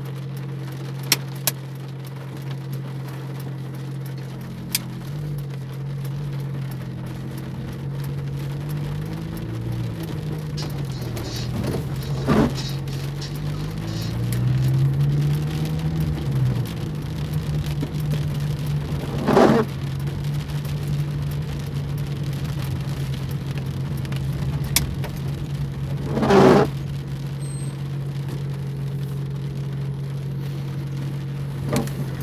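Inside a car driving in heavy rain: the engine's steady hum rises and falls in pitch a few times in the middle, drops click on the glass, and the windshield wipers swish across about every seven seconds.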